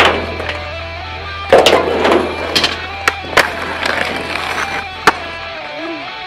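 Background music with a steady bass line, over skateboard sounds: urethane wheels rolling on concrete and several sharp clacks of the board, the loudest about a second and a half in. The music's bass drops out near the end.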